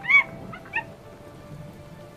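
A few short animal calls used as a story sound effect, the loudest just after the start and two fainter ones about half a second later, over faint background music.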